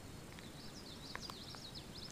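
A songbird singing faintly: a quick run of high, rising-and-falling notes starting about half a second in, over quiet outdoor ambience.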